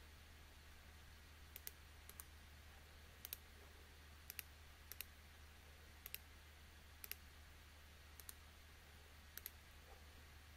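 Computer mouse button clicking faintly, about nine short clicks, most of them close press-and-release pairs, roughly a second apart, as a curve is edited on screen. A steady low hum runs underneath.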